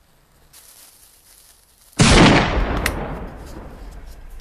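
A joke potato cannon (a bored-out potato on a wooden stand, charged with match heads) firing: one loud bang about two seconds in, its rumble dying away over the next two seconds. A faint hiss comes before it.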